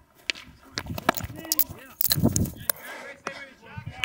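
A mic'd-up infielder fielding a ground ball on infield dirt: scuffing footsteps, clothing rustle and a run of sharp clicks and knocks, with a heavier knock and rustle about two seconds in. Faint voices sound in the background.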